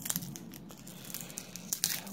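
Crinkling and small tearing crackles as 1991 Topps Stadium Club cards and their pack are handled and pulled apart. The glossy cards are stuck together and tear paper off each other as they separate.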